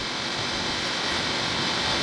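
Steady room noise: an even hiss with no speech, at a moderate level.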